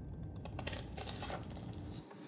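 A rapid run of light clicks and rattling, starting about half a second in.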